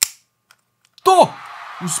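A single sharp mechanical click from the old film camera as the film is worked onto its take-up spool, followed by a pause of near silence and a faint second click. An excited shout comes in about halfway through.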